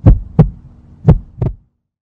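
Heartbeat sound effect: deep double thumps in a lub-dub rhythm, two pairs about a second apart, the second pair ending the sound.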